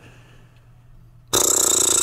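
A short, loud, raspy throat noise from a man, lasting just under a second, comes about a second and a half in after a quiet moment with only a low hum.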